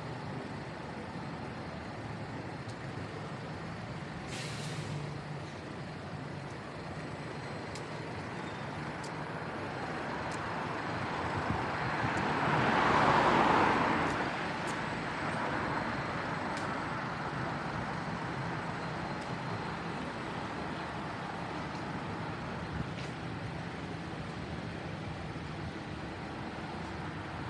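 Steady city-street road traffic, with one vehicle passing close that swells to the loudest point around halfway and then fades away. A short high hiss comes about four seconds in.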